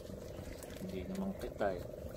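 Faint men's voices, a short call about a second and a half in, over a steady low hum.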